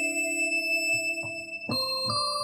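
Bell-like software synthesizer notes played from a Roland A-49 MIDI keyboard: a held note rings on and fades. Near the end a new note is struck, sounding higher now that the keyboard is shifted up an octave.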